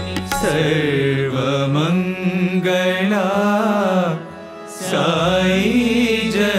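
Devotional bhajan singing: a voice sings long, wavering melodic phrases over a steady sustained accompaniment. There is a short break in the singing about four seconds in.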